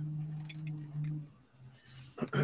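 A man's voice holding a low, steady hum of hesitation for about a second and a half, then trailing off.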